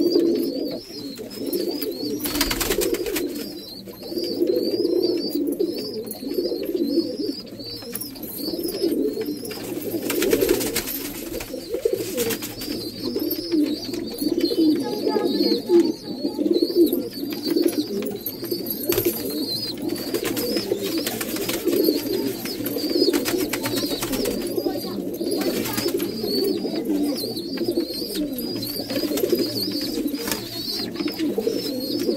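Domestic pigeons cooing continuously in a small wooden loft box. A faint, repeating high chirp runs behind the cooing, and a few brief rustles cut in.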